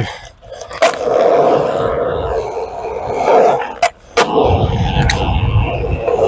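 Skateboard wheels rolling on concrete, a steady rolling noise that grows heavier and lower in the second half. A few sharp knocks stand out, one about a second in and three more later on.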